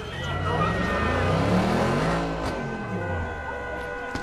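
A car driving past close by: its engine note rises as it approaches and falls away as it passes, loudest about a second and a half in.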